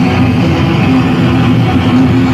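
Black metal band playing live: distorted electric guitars in a dense, loud wall of sound, with a sustained low guitar note, recorded from within the crowd.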